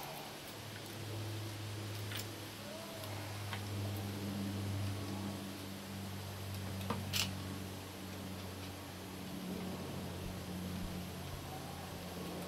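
A few small clicks and taps of a screwdriver and stiff solid-core electrical wire being worked into the terminals of a plug end, the sharpest pair about seven seconds in, over a steady low hum.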